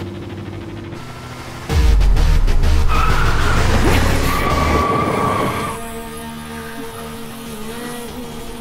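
Action-film soundtrack music with car sound effects. A loud low engine rush cuts in about two seconds in, and a high tyre squeal sounds from about three seconds in until it dies away near the end.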